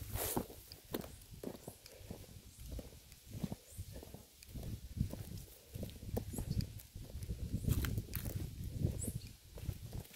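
Footsteps on a dry, cracked earthen path: irregular soft thuds and scuffs with low rumble.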